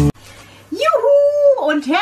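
Guitar intro music cuts off at the start; after a short pause a woman's voice calls out in a drawn-out sing-song, holding one high note for about half a second before going on into speech.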